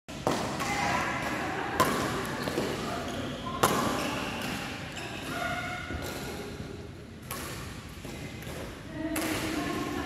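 Badminton rackets striking a shuttlecock during a rally: a handful of sharp cracks a couple of seconds apart, the loudest two near 2 and 4 seconds in, echoing in a large hall. Players' voices can be heard between the hits.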